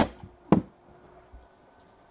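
Sealed cardboard trading-card boxes set down and stacked on a table: two sharp knocks about half a second apart, then a faint tap.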